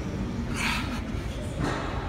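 A man breathing hard and fast under a heavy barbell during a long set of back squats, one forceful breath about every second.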